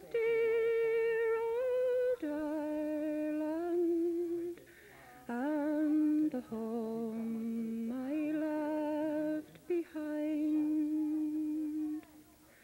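A woman humming a slow melody in long held notes, moving to a new note every second or two, with two short pauses for breath.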